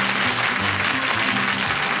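Studio audience applauding steadily, with the game show's opening theme music playing held notes underneath.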